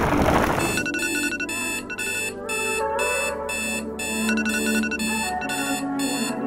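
Smartphone alarm ringing in quick repeated pulses, about two a second, starting about a second in, over soft music. A brief rushing swoosh comes at the very start.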